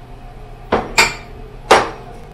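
Three sharp knocks, about a second apart at most, as a nearly empty glass jar of vegetable bouillon is tapped to knock the last of the bouillon into the saucepan.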